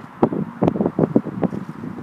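Wind buffeting the microphone in irregular gusts, with a few sharp clicks.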